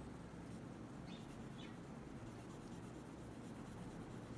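Oil pastel stick rubbing back and forth on paper, a faint steady scratching.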